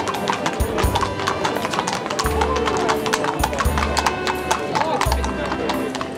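Several horses' shod hooves clip-clopping on a tarmac street as they walk, a dense run of hard strikes, over music and crowd voices.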